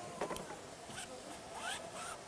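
A few short, quiet scratches of a paintbrush laying oil paint onto canvas in quick strokes.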